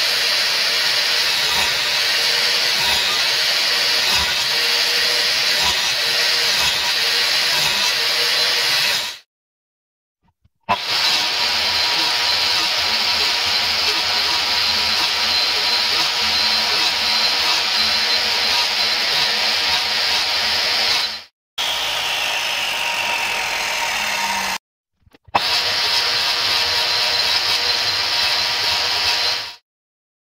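Bosch mitre saw's motor running with a steady high whine as it cuts wood, in several stretches that break off abruptly into silence. In one shorter, quieter stretch the whine falls in pitch as the blade spins down.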